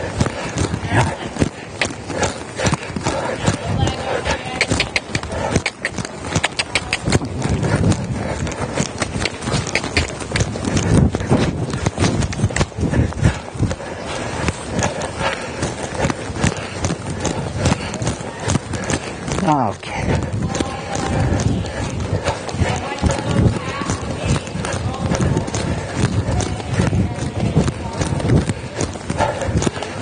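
Hoofbeats of a young mare being ridden on the soft dirt footing of an indoor arena, a steady repeated beat, with the horse's breathing.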